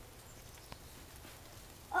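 Faint footsteps crunching in deep fresh snow, one step a little sharper than the rest; a child starts speaking at the very end.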